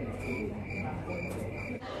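Short high-pitched chirps repeating steadily about three times a second, over a steady low hum; the chirping cuts off near the end.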